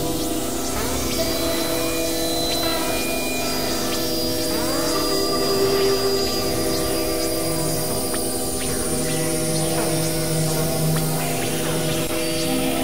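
Layered experimental electronic drone music: many held tones stacked over a dense noisy wash, with pitch glides sweeping up and down through them.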